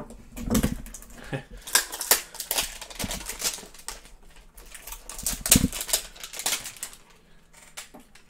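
Hands opening and handling a cardboard trading-card hanger box: an irregular run of sharp clicks, taps and rustles of cardboard and packaging, loudest about two seconds in and again near the middle.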